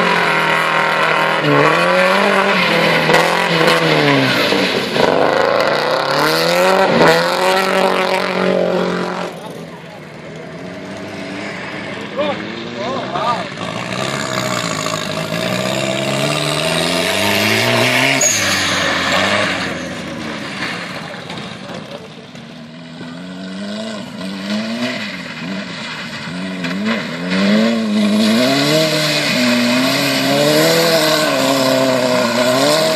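Rally-car engines revving hard on a loose track, the pitch climbing and falling back again and again through gear changes and throttle lifts. A Subaru Impreza's flat-four is heard first; after a quieter lull, an open racing buggy's engine revs the same way.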